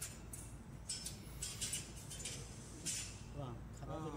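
Faint, light metallic clinks of thin titanium welding strips being handled, a few scattered taps over a low steady hum, with faint voices in the background from about three seconds in.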